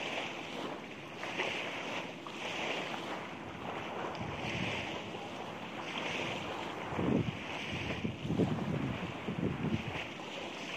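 Wind blowing across the microphone on a beach, with surf behind it and a higher hiss that swells and fades about once a second. The wind gets gustier and louder about seven seconds in.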